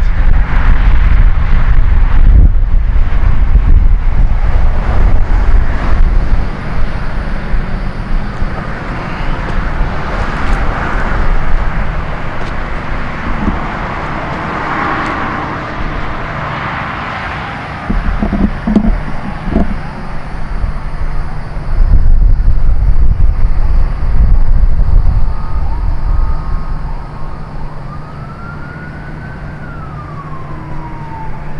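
Outdoor road ambience: a heavy low rumble of passing traffic and wind that swells and fades. Near the end a siren wails, rising and then falling.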